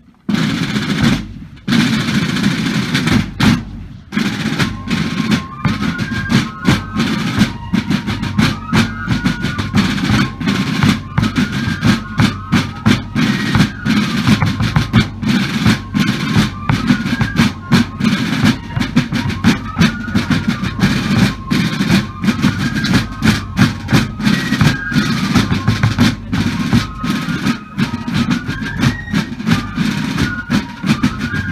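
Massed fifes and drums playing a march. Snare and bass drums start alone, and the fifes come in with the tune about four seconds in over continuous drumming.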